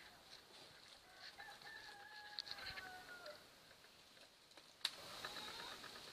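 A rooster crowing once, faint: one long call of about two seconds that drops a little in pitch at its end. A sharp click comes near the end.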